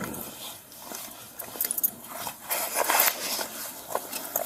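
Irregular rustling and scuffing of clothing rubbing against a police body-worn camera's microphone at close range during a handcuffing.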